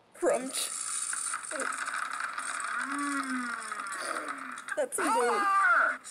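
A man chewing hard candy with a cheek retractor holding his mouth open: loud crunching and rattling starts suddenly, with his voice sounding through it and strongest near the end.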